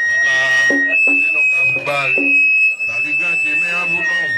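A man's voice amplified through a microphone and loudspeakers, in phrases, with a steady high-pitched whine running under it that jumps up in pitch about a second in.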